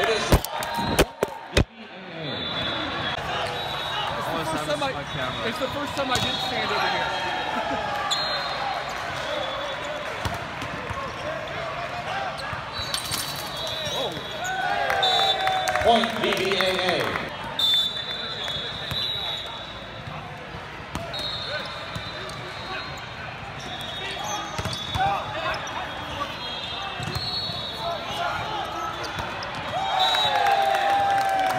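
Indoor volleyball match in a large, echoing hall: a steady din of many voices and players calling out, with sharp ball contacts and short high squeaks from the court. About halfway through there is a burst of shouting as the players celebrate a point.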